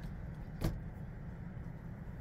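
A single short knock, about two-thirds of a second in, as the eyeshadow palette is set down, over a steady low background hum.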